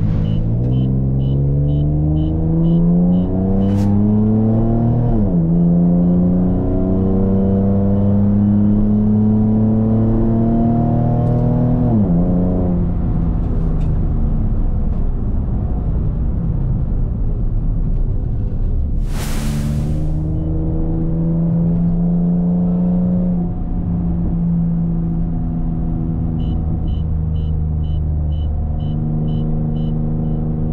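2003 Nissan 350Z's 3.5-litre V6 heard from inside the cabin, pulling through the gears: the engine note climbs in pitch and drops at two upshifts in the first twelve seconds, then holds steady at cruise. A brief rush of noise comes about two-thirds of the way in, and a faint regular ticking sounds near the start and again near the end.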